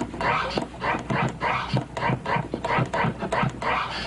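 Forward scratch on a vinyl turntable: the record is pushed forward in short strokes, about four a second, and the crossfader cuts off each pull-back so that only the forward sweeps of the sample are heard.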